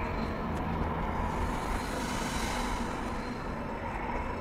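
A steady, rushing background rumble with no clear pitch or beat, holding at an even level throughout.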